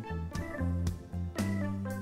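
Instrumental background music with a bass line and a regular beat.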